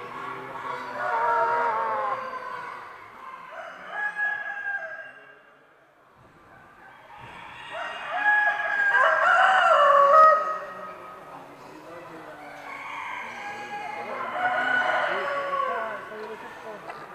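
Several roosters crowing in turn, each crow a long call rising and falling in pitch. The loudest crow comes about halfway through.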